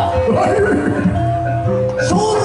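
Live music accompanying an ebeg (kuda lumping) dance: sustained pitched notes over a steady drum pulse. A wavering, sliding pitched sound rises over it about half a second in.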